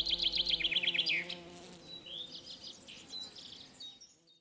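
Birdsong: a fast, high trill of chirps that ends in a falling note about a second in, over a steady low buzz, followed by softer scattered chirps.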